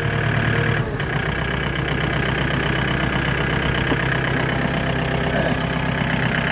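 John Deere compact tractor's diesel engine running steadily, its note changing about a second in.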